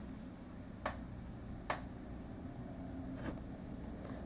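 Faint, steady low room hum with three short clicks: about a second in, near the middle, and past three seconds.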